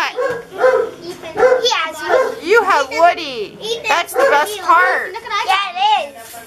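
Excited children's voices chattering and squealing over each other.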